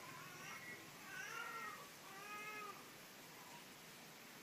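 A cat meowing three times, faintly.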